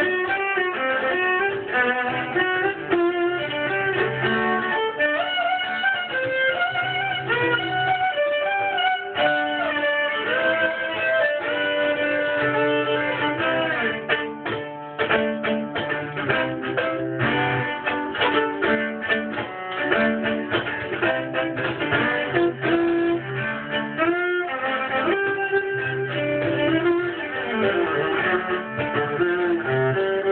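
Solo viola played with a bow: a continuous melodic passage of sustained notes, with a run of quick short notes about halfway through.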